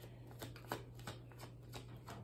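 Tarot cards being shuffled by hand, faint, with a few separate soft card snaps.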